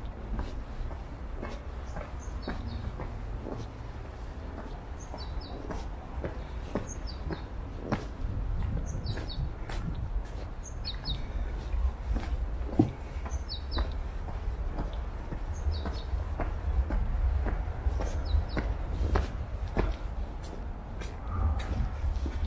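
A small songbird calling over and over, each call two or three short high chirps, repeated every second or two. Under it run a steady low rumble and light footsteps on stone steps.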